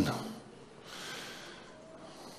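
A man's breath drawn in close to a handheld microphone, a soft hiss about a second in.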